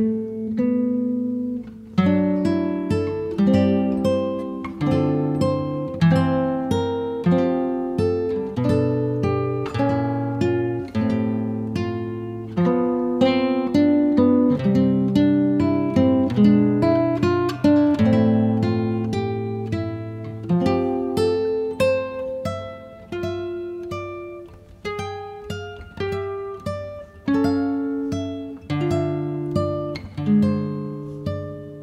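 Slow, calm instrumental meditation music played on acoustic guitar. Picked notes ring out and fade one after another over held low bass notes.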